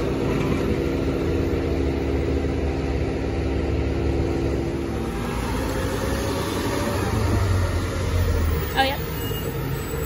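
Front-loading garbage truck's engine running as the truck drives up close, a steady hum with low rumble, with a short high squeal near the end.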